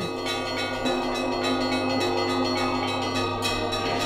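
Russian Orthodox church bells ringing: several bells with overlapping tones that hang on, struck again and again in quick succession.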